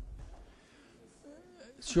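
Speech only: a faint voice in the background, then a man starts speaking into the microphone near the end.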